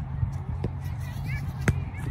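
Soccer ball being touched and kicked on artificial turf: a few sharp thuds, the loudest near the end, over a steady low hum.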